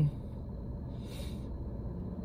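Low steady hum inside a parked car's cabin, with one soft breath about a second in.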